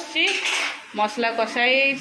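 Steel kitchen pots and utensils clinking, with a louder clatter in the first half second; voices talk over it.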